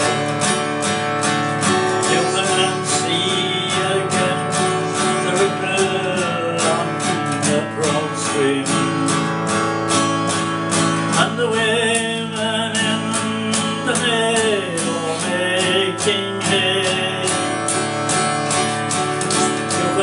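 Steel-string acoustic guitar strummed in a steady, even rhythm, accompanying a folk ballad.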